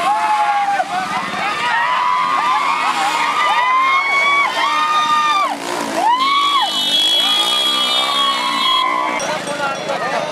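A roadside crowd shouting and yelling as a horse-and-bullock racing cart passes, many voices overlapping. A steady high tone is held for about three seconds past the middle.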